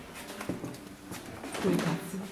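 Indistinct people's voices, with a brief knock about half a second in.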